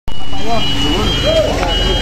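Mitsubishi HDL truck's diesel engine running with an even low rumble. A high-pitched steady beep sounds over it, strongest about midway.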